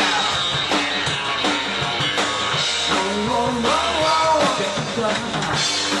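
Live rock trio playing: drum kit, electric guitar and electric bass.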